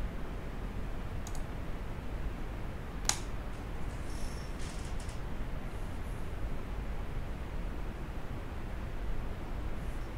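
Steady low room hum and microphone hiss, with a faint computer-mouse click about a second in and a sharper one about three seconds in.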